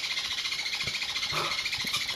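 Continuous high chirping chatter of many small parrots, steady throughout, with a couple of faint clicks as a Meyer's parrot works a peanut in its beak.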